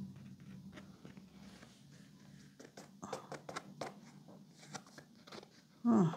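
Light clicks, taps and rustles of cardboard game tokens and cards being handled on a felt table, scattered, growing more frequent about halfway through. A short vocal sound comes right at the end.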